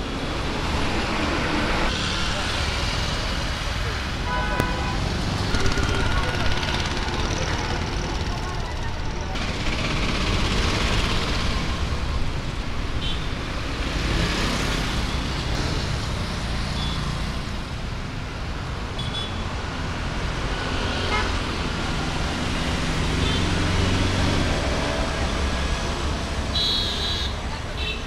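Steady street traffic noise with a low rumble of passing vehicles, a few short horn toots and background voices mixed in.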